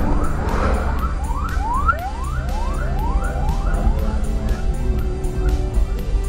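A siren in a fast yelp, rising wails repeated about three times a second, which stops a little over four seconds in, over a steady low vehicle drone and background music.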